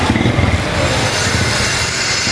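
A motorcycle engine runs close by with a fast, low pulsing beat that fades out about half a second in, leaving a steady hiss of rain and street noise.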